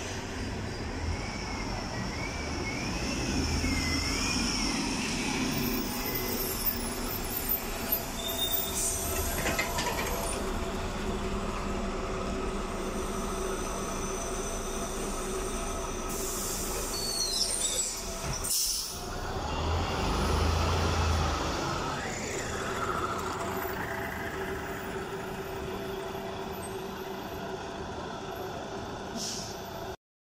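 City buses and trolleybuses in street traffic at a kerbside stop, running steadily, cut together from several clips. A rising whine comes in about two-thirds of the way through.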